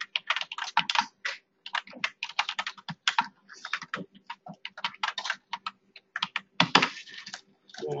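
Typing on a computer keyboard: quick, uneven runs of keystrokes with short pauses between words, over a faint steady hum. A brief louder noise comes about a second before the end.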